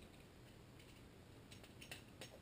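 Near silence with a few faint, light clicks near the end, from a piston and connecting rod being handled.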